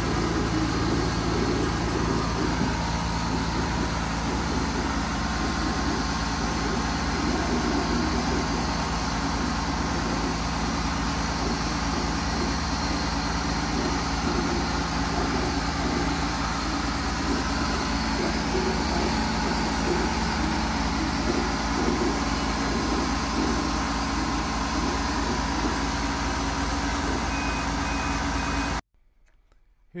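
100 W CO2 laser cutter running a cutting job: a steady whir of machine noise with a low hum. It stops abruptly about a second before the end.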